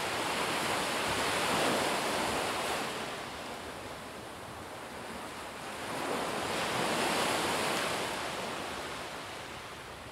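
Ocean waves washing on a beach: a soft, even hiss that swells twice and fades between.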